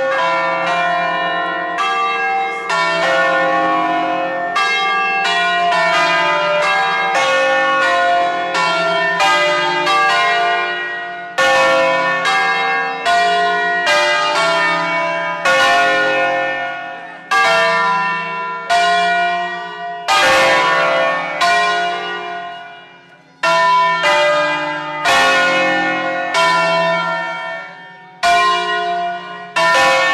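A five-bell concerto of church bells tuned to a slightly flat D-flat, cast by Angelo Ottolina of Bergamo in 1950, rung by hand ropes with the bells swinging on their wheels. The strikes come quickly, about two a second, in the first half, then space out with short pauses between groups toward the end.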